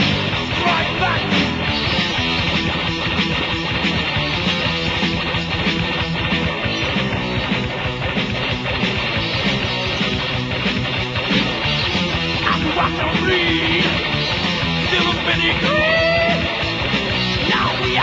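A metal band's lo-fi 1986 demo recording playing an instrumental passage with distorted electric guitar, bass and drums. There are sliding, bent notes in the second half.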